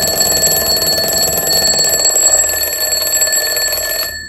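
Mechanical twin-bell alarm clock ringing: its hammer strikes rapidly back and forth between the two bells in one loud, continuous ring that cuts off at the end.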